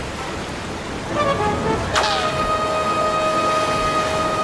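Ship's horn: a sudden start about halfway in, then one long steady blast held on, over a steady noisy wash.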